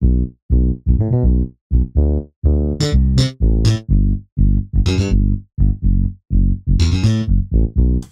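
Sampled electric bass playing a funky staccato line of short, separate notes, about two a second, some with a bright slapped or popped attack. It is played through a slap expression map that gives the sound a funky edge.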